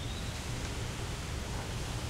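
Steady outdoor background hiss with a low rumble underneath, with no distinct sound event standing out.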